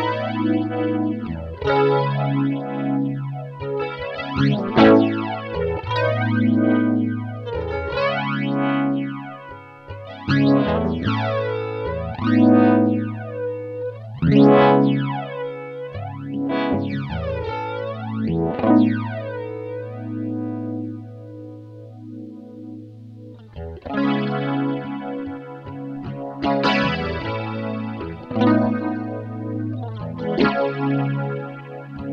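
A Fender Stratocaster on its bridge pickup, clean-toned, is strummed in chords through an Electro-Harmonix Stereo Electric Mistress flanger/chorus pedal. Rate, flanger depth and chorus depth are all at mid settings, so a flanger sweep moves slowly up and down through the chords. Past the middle, one chord is left to fade for a few seconds before the strumming starts again.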